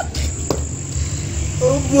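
Crickets chirring in a steady high-pitched drone over a low rumble, with a single sharp click about half a second in. A man's voice starts near the end.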